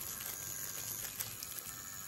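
Pen-style rotary tattoo machine running steadily with its needle cartridge dipped in a small cup of water, rinsing ink out of the needle before switching to a lighter colour.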